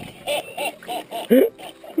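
Laughter: a run of short bursts of voice, the loudest about a second and a half in.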